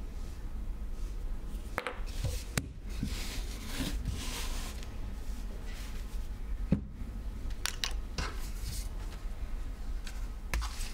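Hand carving of a woodblock: a small carving tool cutting and scraping the wood, with scattered light clicks and one sharp tap about seven seconds in.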